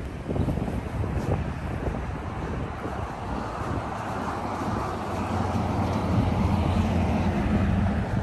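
Motor vehicle engines and traffic running close by on a street, a steady low rumble that gets a little louder in the second half, with wind on the microphone.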